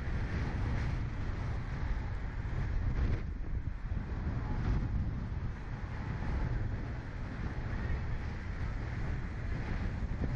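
Wind buffeting the microphone of a camera mounted on a slingshot ride's open seat, a steady low noise that rises and falls slightly.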